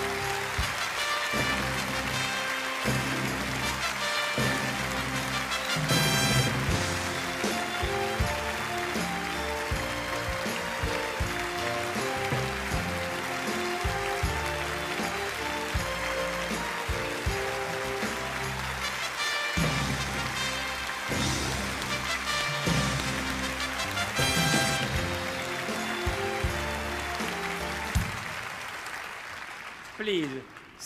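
Music playing over sustained applause from a large theatre audience, both fading away near the end.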